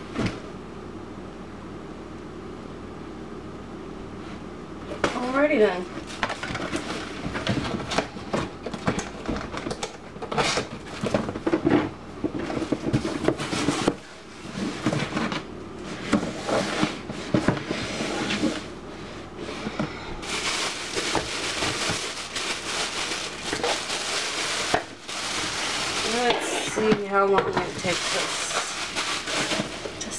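Crinkling and rustling of plastic wrap being pulled off a clear plastic punch bowl, with clatter from handling the plastic parts; the crinkling is densest in the second half.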